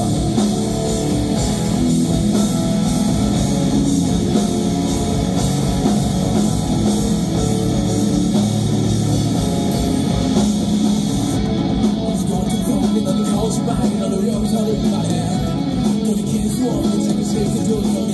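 Live rock band playing an instrumental passage without vocals: electric guitars, bass guitar and drum kit, loud and continuous.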